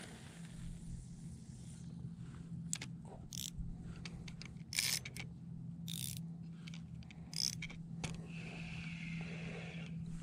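Quiet handling of a spinning rod and reel while casting and retrieving a lure: scattered short clicks and scrapes over a faint steady low hum, with a steadier, higher whirr of the reel being cranked near the end.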